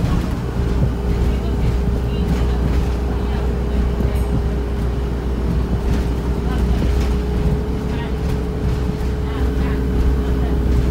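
Inside a Volvo B5LH hybrid double-decker bus on the move: the four-cylinder diesel engine gives a steady low drone, with a constant whine over it and occasional rattles from the body and fittings.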